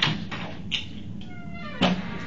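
Interview-room door swinging shut: a short falling squeak from its hinge or closer, then a sharp latch click near the end. A few light clicks and crackles come first.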